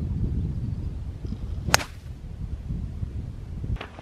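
Golf club striking a ball: one sharp, crisp click about one and three-quarter seconds in. A low rumble sits under it throughout.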